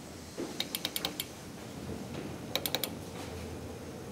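Elevator machinery clicking in two quick rattling runs of four or five sharp clicks each, about two seconds apart, as the hydraulic elevator answers a hall call.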